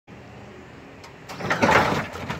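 Lowrider hydraulic pump motor on a Lincoln, switched on from the hand-held switch box. It runs loudly from about a second and a half in as it lifts the front of the car.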